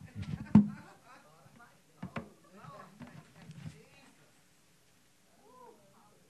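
Indistinct low muttering from a man's voice through a handheld microphone, broken by two sharp knocks about half a second and two seconds in, with a short gliding vocal sound near the end.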